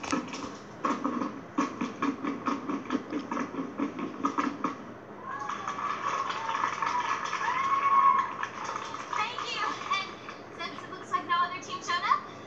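A step-dance routine played through a television speaker: a quick run of stomps and claps with voices, then a stretch of shouting voices in the middle, then more stomps and claps near the end.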